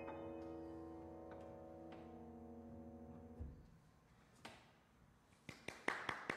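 Grand piano's last chord ringing and slowly fading, then stopping abruptly about three and a half seconds in. A few faint knocks follow near the end.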